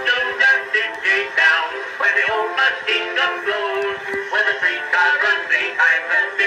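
Music from an early acoustic-era phonograph record of a vaudeville comic song: a melody in short, distinct notes, thin and without deep bass.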